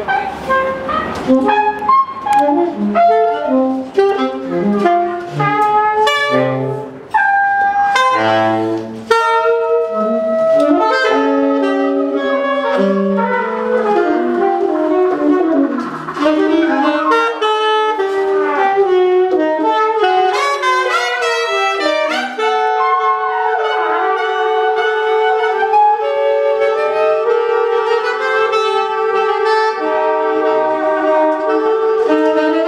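Live small-group jazz: trumpet, alto and tenor saxophones over a drum kit and plucked double bass. The first third is busy, with drum strokes under short horn phrases. Later the horns play longer lines, and from about two-thirds of the way in they hold long notes together.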